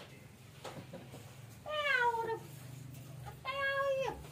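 A cat meowing twice: a call that falls in pitch about two seconds in, then a shorter, steady call near the end.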